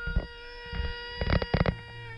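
GoPro action camera's recorded audio carrying a steady, very annoying high-pitched electronic whine, which is camera noise. A few dull knocks come through, several close together about a second and a half in.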